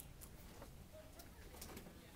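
Near silence: room tone with a few faint clicks, as a microphone is handled between speakers.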